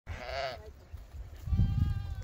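A lamb bleats once, a short call that dips slightly at the end. A fainter, steadier bleat starts near the end.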